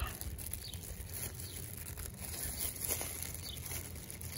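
Faint crinkling and rustling of a thin plastic glove as a gloved hand grips a toad and works a fishing hook through its mouth, with a few small ticks.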